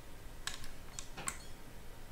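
Computer mouse clicking about four times in quick succession, the sharp clicks of working sliders in editing software.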